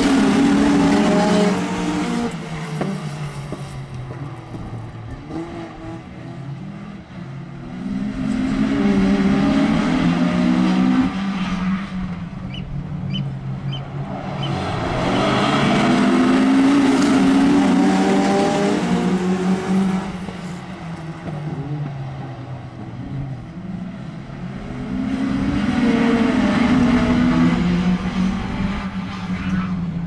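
A pack of road-going saloon cars racing around a short oval tarmac track. The engines grow loud as the field passes, about every eight to nine seconds, then fade as it goes round the far side, their pitch rising and falling through the corners.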